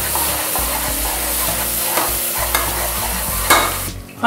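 Chopped onion, green chilli and mint sautéing in hot oil in a stainless steel pot: a steady sizzle, with a metal ladle stirring and scraping the pan a few times. The sizzle cuts off suddenly just before the end.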